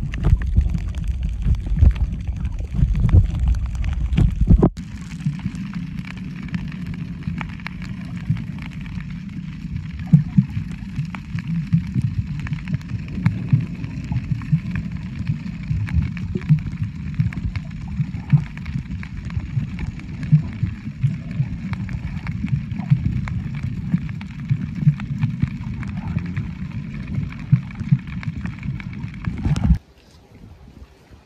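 Muffled underwater sound picked up by a submerged camera over a coral reef: a low rumble of moving water with many small clicks and crackles. About five seconds in it drops to a quieter, steadier level.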